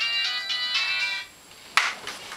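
A short electronic ringtone-like melody of clear notes from a small speaker, cutting off about a second in. Near the end there is a single sharp thump.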